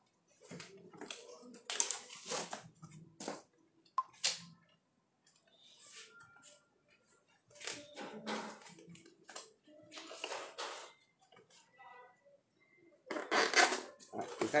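Plastic packing wrap and foam sleeves on a new bicycle rustling and crinkling in irregular bursts as hands strip off the wrapping and unfasten the plastic cable ties, with a louder burst just before the end.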